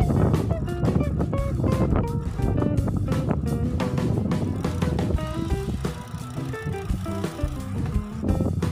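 Background music with a steady beat and a stepping melody.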